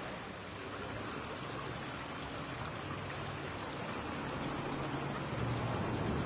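Steady outdoor ambience: an even, rushing, water-like hiss with a faint low hum underneath that grows a little louder near the end.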